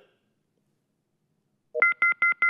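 Near silence, then near the end a telephone line starts a fast run of short electronic beeps, two tones together, about six a second, as a call-in caller's line is put through.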